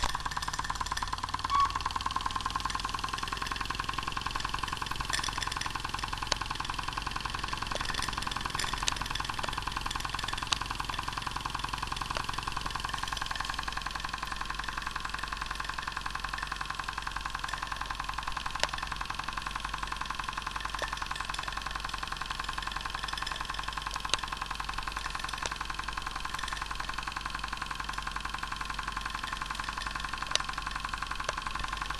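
DR Mercer Type 2 model steam traction engine running fast and steady with its regulator fully open and not yet in gear, a rapid even chuffing over a steam hiss, with a few sharper ticks.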